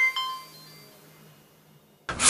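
Logo intro sting: two bright bell-like chime notes struck right at the start, a moment apart, ringing out and fading away within about a second and a half.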